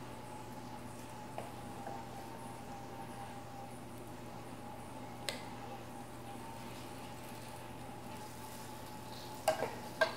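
Wooden spoon working moist sausage filling into acorn squash halves in a glass baking dish: faint, with a light tap about a second in and a sharper click about five seconds in, over a steady low hum. A louder knock comes near the end as the spoon goes back into the mixing bowl.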